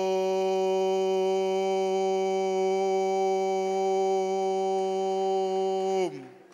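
A shofar (ram's horn) blown in one long, steady held note, dipping in pitch as it tails off at the very end.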